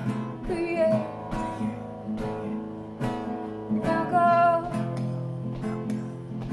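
Classical-style acoustic guitar strummed in a steady rhythm, with singing that comes in over it in phrases.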